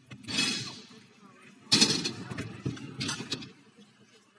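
Stunt scooter wheels rolling on concrete, a rough grinding noise with sharp clacks, starting suddenly and loudly about two seconds in as riders push off toward the ramp.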